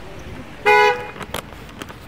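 A single short car horn honk, one steady tone lasting about a third of a second, about half a second in. A few light clicks follow.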